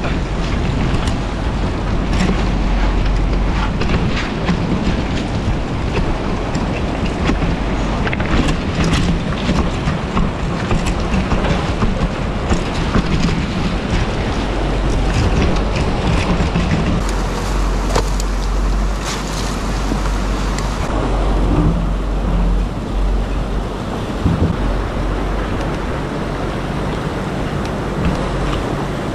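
Fast river water rushing and wind rumbling on the camera microphone, with scattered knocks and scrapes as a loaded belly boat is dragged over gravel and pushed out into the current.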